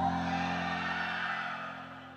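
Background music fading out, growing quieter from about a second in.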